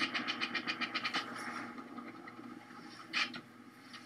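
Fast, evenly repeated drumbeats, about ten a second, that thin out and fade after the first second. They are heard as video playback relayed through a video call.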